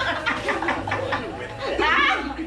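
Several people talking over one another and laughing.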